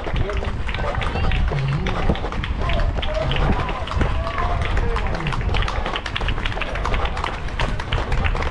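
A runner's footfalls on a tarmac road, a quick steady beat, while spectators along the road call out and clap.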